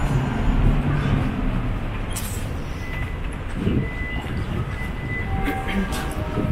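Nottingham Express Transit tram running along street track as it pulls into the stop: a steady low rumble of rolling wheels and motors, with a faint high whine in the second half.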